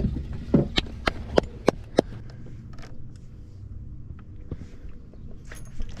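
A quick run of about six sharp knocks on a fishing boat's deck and fittings in the first two seconds. After them comes a faint steady low hum.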